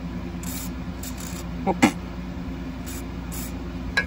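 Aerosol can of PB Blaster penetrating oil spraying in several short bursts onto the rusty coil-spring retaining nut and clip, soaking it so the nut will loosen.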